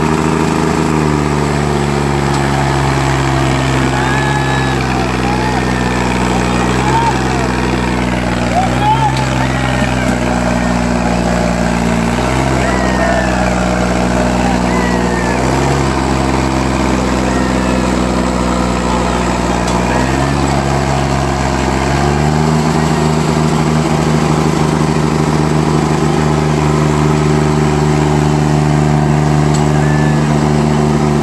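Sonalika DI-35 tractor's three-cylinder diesel engine working hard, pulling a 16-disc harrow through wet soil. The engine revs up at the start, its note sags briefly and picks up again several times under the load, then climbs to a higher, steady pitch about two-thirds of the way through. Spectators' voices and shouts come faintly over the engine.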